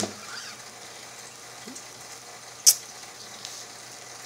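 Low, steady recording hiss and faint hum with no music, broken by one sharp click about two and a half seconds in and a fainter tick near the end: handling noise from someone moving close to the recording device.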